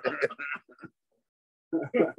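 Voices over a video call: speech trails off in the first second, then about a second of dead silence, then a short laugh starts near the end.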